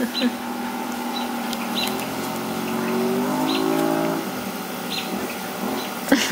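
A motor vehicle's engine running, its pitch climbing as it revs from about two seconds in, then falling off about four seconds in.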